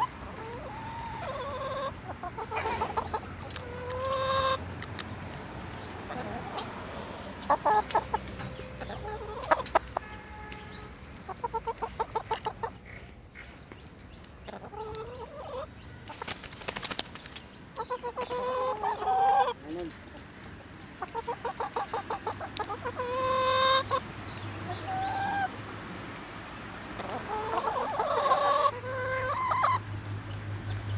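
Several domestic hens clucking and calling, with quick runs of clucks and longer drawn-out calls through the whole stretch.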